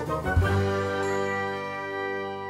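Short intro jingle: a bright, ringing chord struck about half a second in, held as it slowly fades.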